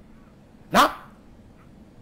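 A single short, sharp vocal call about three-quarters of a second in, dropping in pitch.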